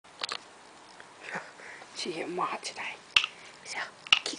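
A person speaking a few soft words, with a few short sharp clicks, the loudest one about three seconds in.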